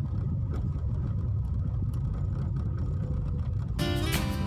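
Steady low rumble of a car's engine and tyres heard from inside the cabin while driving slowly, with music starting up again near the end.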